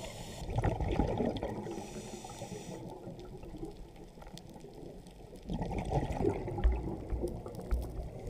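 Water bubbling and splashing, louder in two spells: from about half a second in, and again from about five and a half seconds in.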